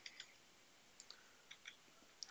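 A few faint computer keyboard keystrokes, soft scattered clicks against near silence.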